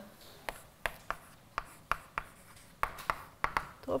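Chalk writing on a blackboard: a run of short, irregular taps and scratches, a few each second, as the letters are written.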